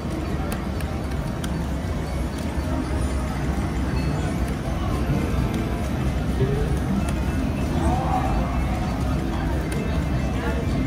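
Casino floor ambience: background music over a steady low hum, with indistinct voices of other people.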